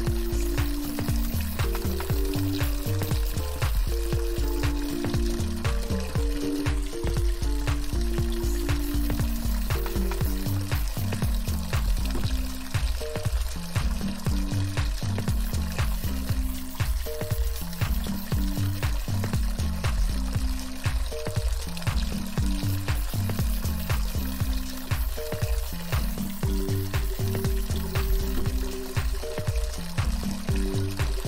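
Rushing stream water with soft ambient music: slow low melodic notes over a pulsing bass.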